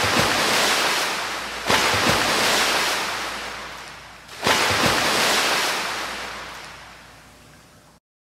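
Ocean surf: three waves break, one at the start, one just under two seconds in and one about halfway through. Each rushes in suddenly and fades away slowly.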